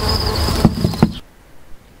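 Crickets trilling steadily in a high, even tone over rustling and two short knocks; everything cuts off abruptly a little over a second in.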